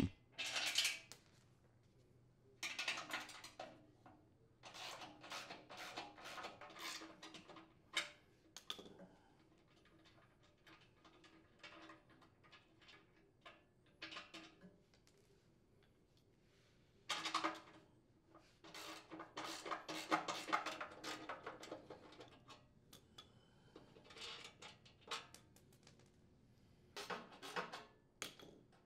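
Intermittent metallic clinking and rattling of a socket wrench and box wrench working nuts and bolts loose from the sheet-steel flail housing of a chipper shredder, in several short clusters with quiet gaps between.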